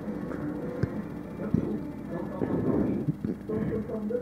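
Faint background of distant music and voices, with a few soft clicks.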